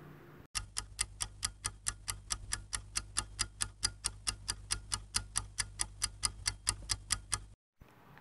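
Clock ticking sound effect, about four even ticks a second over a faint low hum, starting about half a second in and cutting off suddenly near the end: a timer marking the time given to answer the exercise.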